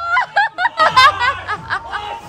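Laughter in quick, high-pitched bursts.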